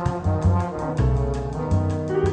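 Early-1960s bossa nova jazz recording: a horn section led by trombone holds chords over plucked bass notes and drums, with a quick, steady cymbal tick.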